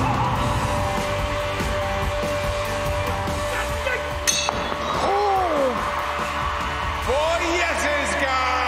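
Loud backing music for a stage martial-arts routine, with one sharp crack of a strike or impact about four seconds in. Performers shout out twice, once just after the crack with a falling pitch and again near the end.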